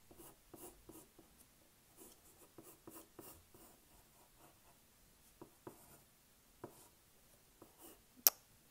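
Pencil scratching on paper in a series of short, faint strokes as a drawing is sketched, with a few sharper ticks of the lead in the second half.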